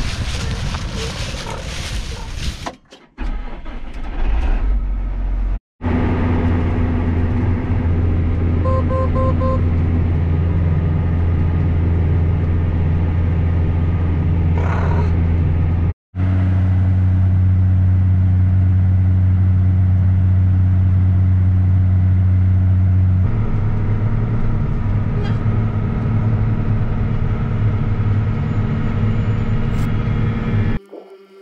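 John Deere tractor engine running steadily, heard from inside the cab. Four quick beeps sound about nine seconds in, and the engine note changes pitch about 23 seconds in.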